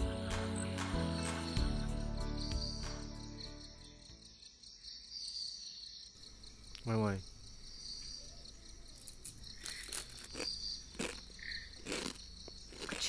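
Crickets chirping steadily in a high, pulsing chorus while soft background music fades out over the first few seconds. A brief vocal sound about seven seconds in, and a few soft clicks near the end.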